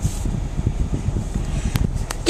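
Low, uneven rumble inside a car cabin with the handling noise of a handheld camera being swung around, and a sharp click near the end.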